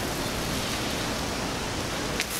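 Steady, even hiss of background noise with no distinct event in it.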